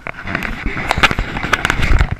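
Loud crackling and rustling right on the microphone, with many sharp knocks and a low rumble: the GoPro being handled and moved.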